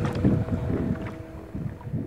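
Wind buffeting the microphone on the water, a lumpy low rumble that gradually fades, with a faint steady note from the music lingering beneath it.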